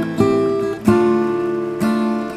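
Acoustic guitar music: plucked notes and chords that ring out and fade, with a new one struck about every second.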